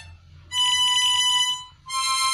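Mahogany ten-hole diatonic harmonica played one held note at a time. A short break is followed by a note held for about a second, starting about half a second in, and the next note begins just before the end.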